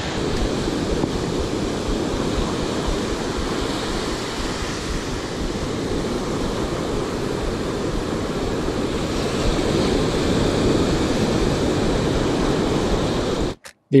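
Ocean surf breaking and washing up the beach, a steady noise, with wind buffeting the microphone. It cuts off suddenly just before the end.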